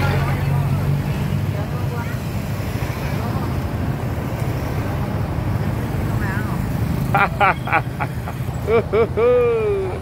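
Pickup truck engine running, a steady low rumble that fades somewhat as the truck pulls away. Near the end, children's voices call out and laugh.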